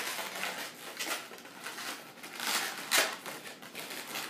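Inflated latex twisting balloons rubbing against one another and against the hands as the sculpture is pushed and adjusted, with a couple of louder handling noises about two and a half to three seconds in.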